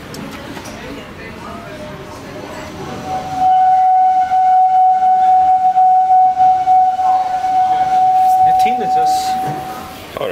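KONE EcoDisc gearless traction machine of a machine-room-less elevator screeching as the car travels. A single high, steady whine comes in about three seconds in, stays at one pitch, and stops near the end.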